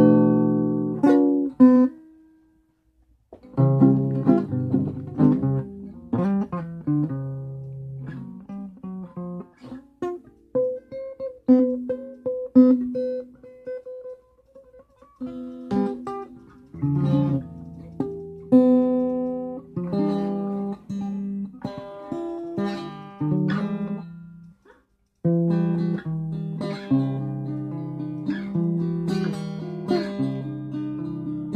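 Guitar played by hand, single plucked notes and strummed chords that ring and fade, stopping briefly twice.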